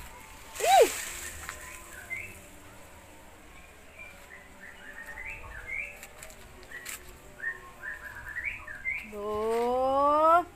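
Small birds chirping in short repeated notes, with one sudden sharp call about half a second in that is the loudest sound. Near the end a cat gives one long meow that rises steadily in pitch.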